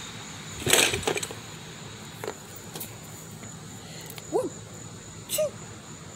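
A folding chair slammed down onto a body lying on grass: a sharp clattering hit about a second in, followed by a few lighter knocks.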